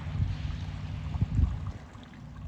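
Wind buffeting the phone's microphone as an uneven low rumble that swells about a second and a half in and eases near the end, over the faint rush of a small babbling brook.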